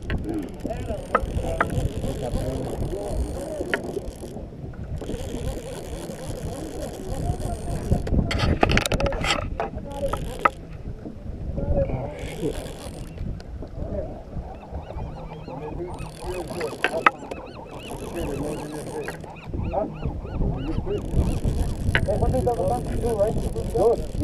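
A baitcasting fishing reel being cranked in as a fish is brought up, its gears whirring, over a steady low rumble, with faint voices in the background.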